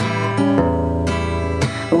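Acoustic guitar strummed, its chords ringing, with a change of chord about half a second in.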